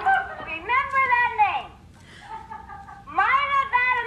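A woman's voice giving two drawn-out, high-pitched vocal cries that rise and then fall in pitch, about two seconds apart.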